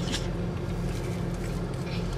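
Car engine idling, heard inside the cabin as a steady low hum, with a few faint soft ticks.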